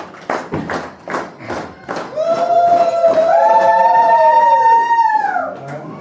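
A few sharp hand claps, then high voices holding a long sung note together for about three seconds. The note rises partway through and falls away at the end.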